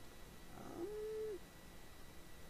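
A faint, short pitched sound that rises and then holds at one level for about half a second before dropping away.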